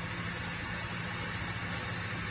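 Steady background hiss with a faint low hum, unchanging throughout: room noise in a pause between words.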